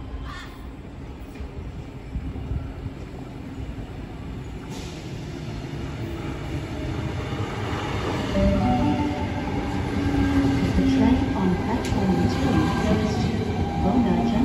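Sydney Trains Tangara electric train arriving at a platform and slowing, its rumble growing louder as it approaches and jumping up about eight seconds in as the front runs past, with whining tones that step up and down as it brakes.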